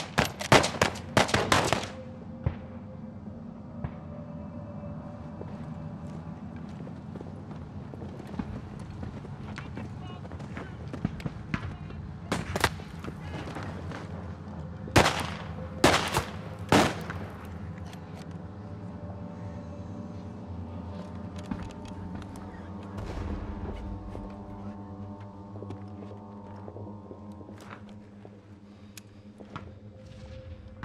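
A volley of rifle shots in the first two seconds, then a handful of scattered single shots around the middle, over a steady music score with held tones.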